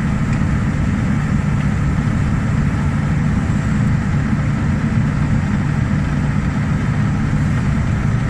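John Deere combine's diesel engine idling with a steady, low rumble.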